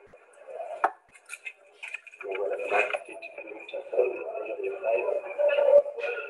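Indistinct background voices, with a sharp click about a second in and another near the end.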